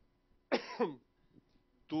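A man coughs into a handheld microphone: one short double cough about half a second in.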